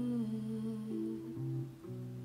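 Acoustic guitar accompaniment of a slow ballad, a few sustained notes ringing between sung phrases, with a soft female voice trailing off right at the start.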